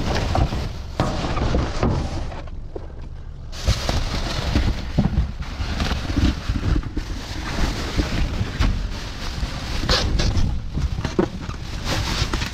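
Plastic bags rustling and crinkling as a gloved hand pulls and shifts them, with low thumps and rumble from the handling. There is a brief quieter lull about three seconds in.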